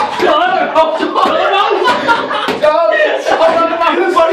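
Men's voices shouting and laughing close by, with a few sharp slaps and knocks of a boxing glove landing on a body.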